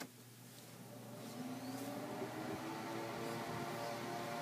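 A machine hum that comes in about a second in, slowly rising in pitch and growing louder.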